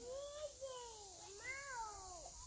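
About three high-pitched, drawn-out wordless cries in a row, each rising and falling in pitch.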